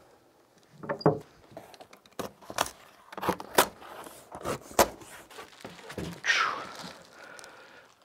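A cardboard shipping box being opened and unpacked by hand: scattered knocks and thuds of cardboard being handled, with a longer rustling scrape about six seconds in.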